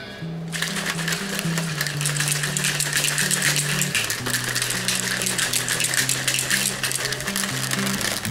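A plastic protein shaker cup shaken hard, the shake inside rattling and sloshing in a fast continuous rattle that starts about half a second in, over background music with a steady bass line.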